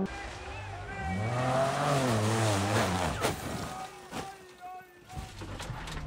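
Onboard sound of a rally car crashing. The engine note rises and falls, a few sharp knocks of impact come about three to four seconds in, and it goes much quieter as the car comes to rest with its windscreen smashed.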